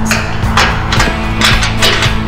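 Background music with a steady beat, drum hits about twice a second over a sustained bass line.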